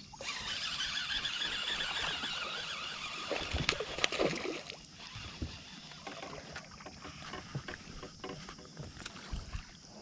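Baitcasting reel running: a steady high whirring over the first five seconds or so, with a couple of sharp clicks near the middle. Fainter handling and water noises follow.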